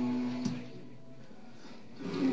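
Male a cappella group holding a low chord that stops about half a second in, followed by a short pause with only faint room sound.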